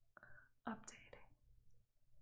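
A woman softly saying a single word, "updating", against near silence.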